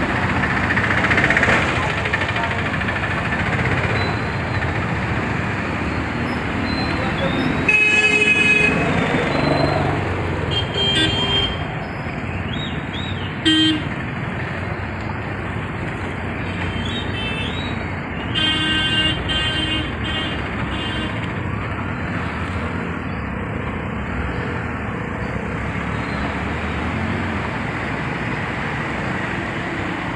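Road traffic noise from motorbikes and cars driving through floodwater. Vehicle horns honk about eight seconds in and again around eighteen to twenty seconds.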